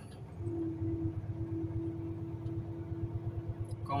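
Truck's diesel engine running, heard inside the cab as the truck rolls slowly, with a steady whine that sets in about half a second in.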